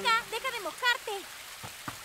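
Rain falling as a steady hiss, with a few sharp drop taps near the end. Over the first second a girl's voice makes a few short, delighted, rising and falling sounds.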